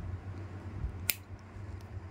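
Nail nippers snipping at the edge of an ingrown big toenail: one sharp snip about a second in, with a few faint ticks of the blades, over a low steady hum.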